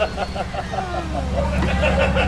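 A person laughing in short quick bursts that fade half a second in, then voices, over a steady low hum of an idling vehicle.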